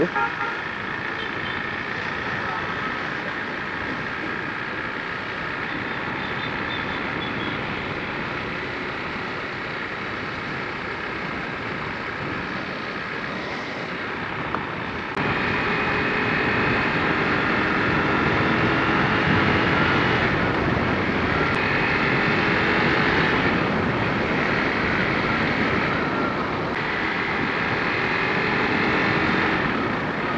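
Motorcycle engine running under way, heard from a camera mounted on the bike, with wind and road noise; the engine note slowly rises and falls with the throttle. The sound gets abruptly louder about halfway through.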